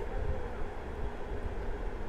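A low, steady background rumble with a faint hiss, with no distinct knocks or scrapes.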